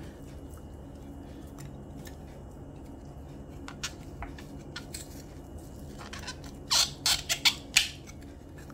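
Kitchen knife prying and scraping fresh coconut meat away from the shell: a few scattered sharp clicks, then a quick burst of scrapes and clicks near the end, over a steady low hum.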